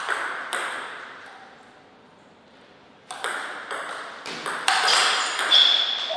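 Table tennis ball clicking off paddles and table: two sharp knocks at the start, then from about halfway a rally of quick clicks, two to three a second, growing louder.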